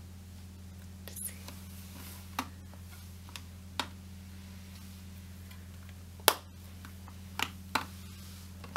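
Makeup compacts and cosmetic packaging being handled and set down on a pile: a scatter of light plastic clicks and taps, the sharpest about six seconds in, over a steady low hum.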